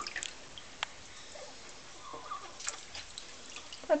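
Quiet washing sounds from a newborn's sink bath: a wet washcloth wiping the baby's face, with soft water drips and a few scattered small clicks.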